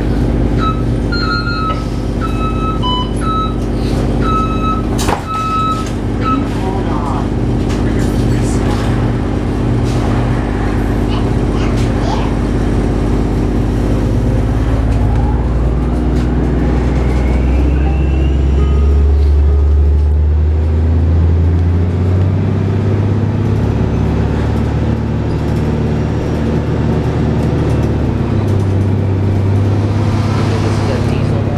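Loud cabin sound of a 2007 Orion VII hybrid bus (Cummins ISB diesel with BAE Systems HybriDrive) under way: a steady engine drone, with the electric drive's whine rising in pitch as the bus accelerates around the middle. A series of short beeps sounds in the first few seconds, and a sharp clunk comes about five seconds in.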